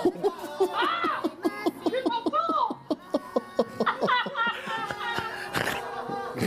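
People laughing: a steady run of short bursts of laughter with a few exclamations mixed in.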